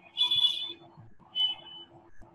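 Two short shrill high-pitched sounds, the first lasting about half a second and starting just after the beginning, the second shorter, about a second and a half in, over a faint steady hum.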